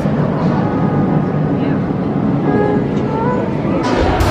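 Steady, dense background rumble with faint voices of people talking around the middle.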